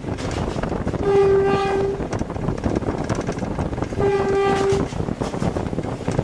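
GE U15C diesel locomotive horn sounding two blasts of about a second each, a single steady tone, heard from inside the cab over the running locomotive and wheel noise.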